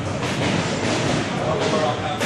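Busy boxing-gym noise during a sparring session: a steady, dense din with background voices.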